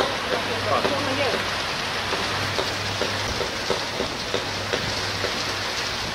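Heavy rain falling steadily, with a low electrical hum from a short-circuit arc on a 10 kV power-line pole that comes and goes and stops about five seconds in.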